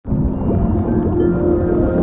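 Background music of low sustained tones over a deep rumble, with a few faint sliding tones, coming in suddenly at the start.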